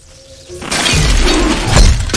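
DVD menu transition sound effect: after a brief hush, a harsh burst of noise swells up over the first second and stays loud, peaking near the end, with music underneath.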